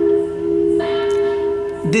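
Bell-like ringing tones held steady, as in background music, with a fresh note struck a little under a second in.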